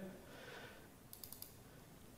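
A few faint computer-mouse clicks about a second in, against near-silent room tone.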